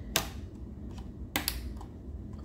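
Sharp clicks of a TV power circuit board being pushed along the metal chassis into its mounting clips: one near the start and two in quick succession later on.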